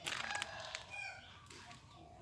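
A rooster crowing faintly, one call from about half a second in to just past one second, with a few scuffing footsteps on a dirt lane near the start.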